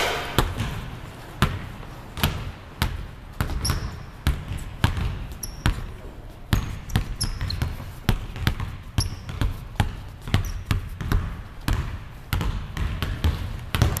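Basketball dribbled on a hardwood gym floor: an uneven run of bounces, about one to two a second. Several short, high squeaks of sneakers on the floor fall between them.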